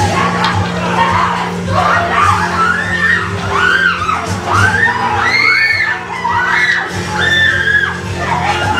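Several actors screaming and wailing over steady, low background music, the cries coming thick and overlapping from about two and a half seconds in, as the cast acts out a violent beating with sticks.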